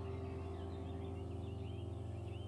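Soft ambient background music, a sustained low pad slowly fading, with bird chirps over it.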